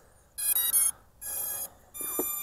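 Potensic Atom SE drone sounding its electronic power-on tones: a quick run of high beeping notes about half a second in, then a steadier beep near the middle and another at the very end.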